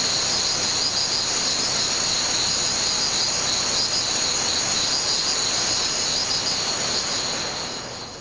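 Steady hiss with high, rapidly pulsing chirps over it, like a cricket chorus, fading out near the end.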